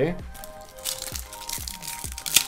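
Foil trading-card booster pack crinkling and crackling in the hand as it is picked up, with background music playing.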